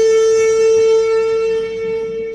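Alto saxophone holding one long, steady note that fades away near the end.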